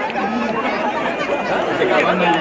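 Spectators chattering, with a man's voice carrying over the stadium public-address system.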